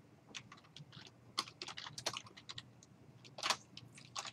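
Computer keyboard typing: irregular clicks of single keystrokes as a short line of text is typed.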